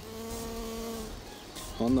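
Honeybee wings buzzing in close-up: one steady buzz for about a second that then fades.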